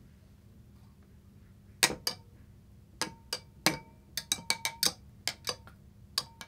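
Irregular sharp ticks and clinks, each with a brief ring, from the beaker-and-immersion-heater setup as the water heats. They start about two seconds in and come in an uneven run, several close together in the middle.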